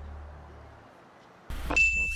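A low background fades out, then about one and a half seconds in an animated logo sting starts with a sudden hit and a clear, held high ding.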